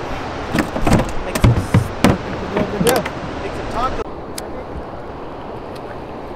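A run of knocks and heavy thumps from a hard plastic cooler as a striped bass is dropped in and the lid shut, the two loudest thumps about a second and a half and two seconds in. After about four seconds only a steady rush of wind and water remains.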